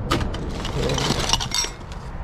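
Brass testing sieves and small glass pieces clinking and rattling together as they are dug out of a plastic bin: a quick run of sharp clinks for the first second and a half, easing off near the end.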